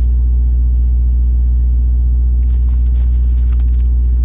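A steady low-pitched hum, loud and unchanging, with a few faint clicks in the second half.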